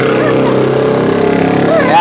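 Brief talking over a steady low hum from a running vehicle engine.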